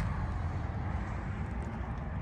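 Steady outdoor background noise: a low rumble with a faint hiss and no distinct events.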